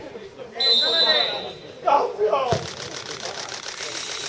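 A referee's whistle blown once, steady and shrill for about a second, over shouting voices of players and spectators. About two and a half seconds in comes a single sharp thud, followed by a noisy stir of voices.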